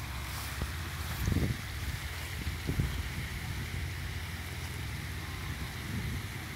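Steady rush of falling water from a fountain's cascade, with wind buffeting the microphone as a low rumble that swells briefly twice.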